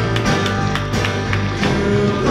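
Live worship band playing: strummed acoustic guitar with electric guitars and bass guitar in a steady, even rhythm.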